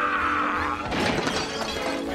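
Cartoon crash of dishes shattering, with a cluster of sharp impacts about a second in, over orchestral music.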